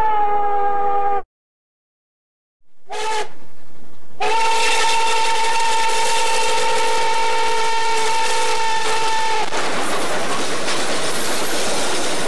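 The cracked whistle of Nickel Plate Road No. 587 steam locomotive: a blast that cuts off about a second in, a short toot a couple of seconds later, then a long steady blast of about five seconds. After the long blast comes the steady rumble of the passing train.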